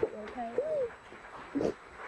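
A woman crying, with wavering, sobbing cries in the first second and a short sob about one and a half seconds in.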